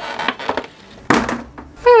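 Cardboard toy-box packaging being torn open by hand: a crackly rustle, then a short, louder rip a little after a second in.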